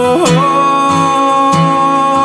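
Acoustic guitar strummed in a steady rhythm, with a voice holding one long sung note after a short upward slide.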